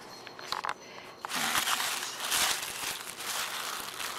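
White tissue paper rustling and crinkling as hands pull it back inside a cardboard shipping box, starting about a second in after a few light clicks.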